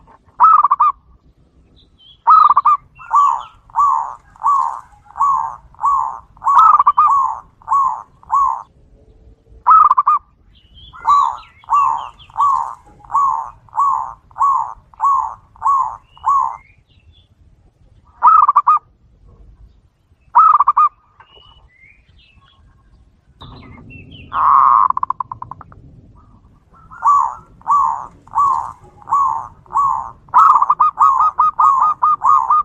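Zebra dove (perkutut) cooing in long runs of short, evenly spaced notes, about three every two seconds. Two single coos fall in the middle. About twenty-four seconds in comes one longer, rougher note, then another run begins.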